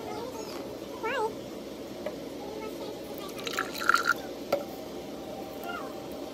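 Liquid poured into a cut-glass tumbler, with a cluster of sharp clinks and splashes about three and a half to four seconds in. Faint voices run underneath, and a short warbling call comes about a second in.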